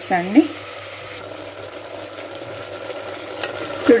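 Masala-coated chicken pieces sizzling with a steady hiss as they fry in an aluminium pressure-cooker pot.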